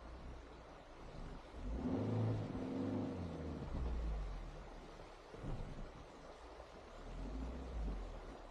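Suzuki Jimny engine pulling the vehicle slowly along a rough forest track, heard from outside on the roof. The revs swell about two seconds in, ease off after about four seconds, and rise again briefly near the end.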